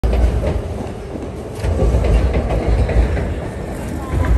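Loud, uneven low rumble with a few faint clicks: city noise at the exit of an elevated railway station.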